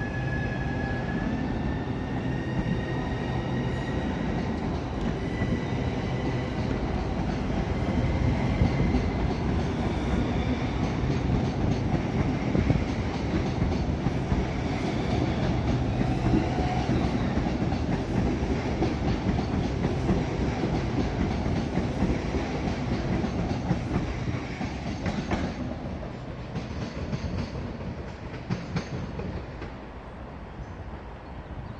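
Southeastern Class 395 electric multiple unit pulling out past the platform: its traction motors whine, rising in pitch as it accelerates, over a steady rumble of wheels on rail with some clicking over joints. The sound fades away near the end as the last carriage clears.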